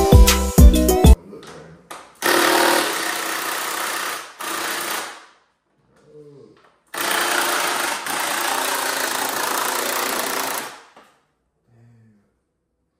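Background hip hop music cuts off about a second in. Then a cordless drill runs twice, each time steadily for about three seconds, working the bolts on a Yamaha YZ450F dirt bike's plastic panels.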